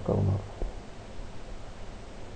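A man's low murmured voice trailing off in the first half-second, then faint steady room noise on the microphone.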